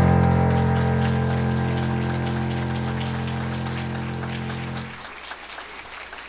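The final chord of a song held on a keyboard, slowly fading and then released about five seconds in, with light scattered clapping from a small audience.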